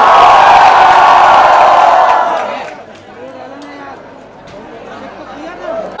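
A large crowd cheering and shouting loudly, then dying down after about two and a half seconds into scattered chatter.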